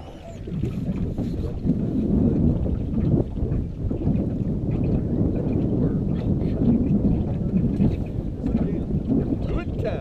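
Wind buffeting the camera microphone, a low, fluctuating rumble that builds over the first second or so and then holds steady.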